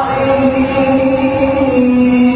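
A man reciting the Qur'an in the melodic contest style (qira'at sab'ah), holding one long unbroken note that steps slightly lower near the end.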